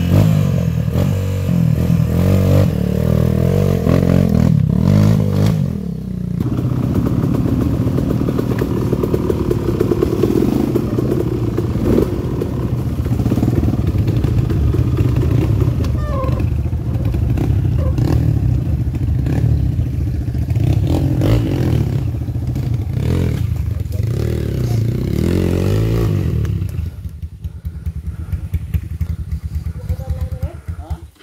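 Dirt bike engine running and revving up and down at low trail speed, with knocks and clatter from the bike working over rough ground. For the last few seconds the engine is quieter and uneven, in short blips.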